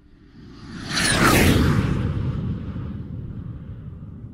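A jet flyby sound effect. It swells to a peak about a second in, with a falling whine, then fades away in a long low rumble.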